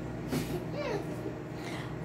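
A child laughing faintly, with low voices in the room and a short knock near the start.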